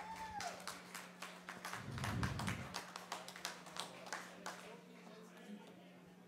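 Scattered audience applause, faint, thinning out and stopping about four and a half seconds in, with a faint steady low hum beneath.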